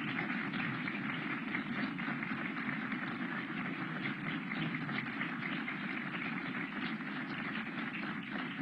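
Audience applauding steadily: a dense patter of many hands clapping.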